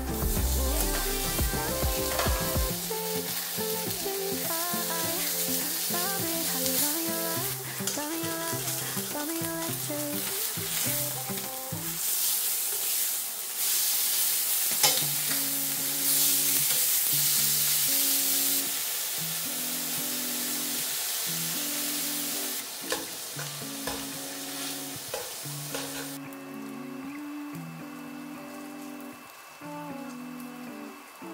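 Pork sizzling as it sears in a stainless steel frying pan, a loud, steady hiss, with background music under it. The sizzle drops to a fainter frying sound in the last few seconds.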